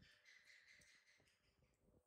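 Near silence: quiet room tone, with a faint high-pitched chirping or squeaking sound in the first second or so.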